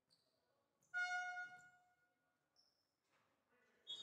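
A basketball scorer's-table horn sounds once about a second in: a single steady, reedy tone lasting under a second that rings on in the sports hall. It signals a substitution. Near the end comes a brief higher referee's whistle blast.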